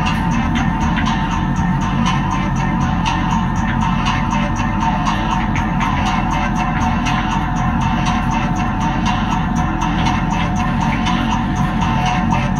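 Improvised ambient rock music: a dense, steady wash of guitar over a strong low bass, with light ticks running through it.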